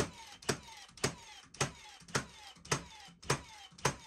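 Milwaukee M18 Fuel cordless framing nailer driving 21-degree plastic-collated nails into wood in rapid succession: eight sharp shots, nearly two a second, each followed by a short falling whine. Every shot fires without hesitation or misfire, so the converted 21-degree magazine is feeding properly.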